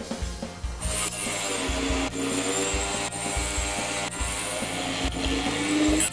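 Angle grinder with a cut-off wheel cutting through a cast iron scroll casting. It starts about a second in, a dense hissing cut over a motor whine that dips as the wheel bites and then rises again.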